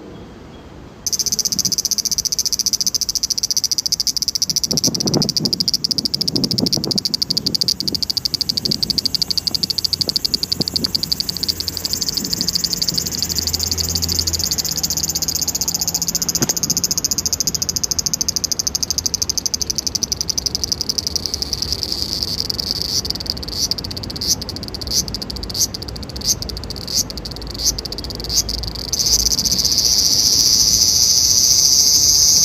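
A loud chorus of singing insects: a dense, high, fast-pulsing trill that starts abruptly about a second in. Near the end it breaks into regular pulses about one a second, then goes steady again.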